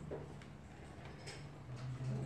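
A few faint, irregularly spaced clicks over a steady low hum.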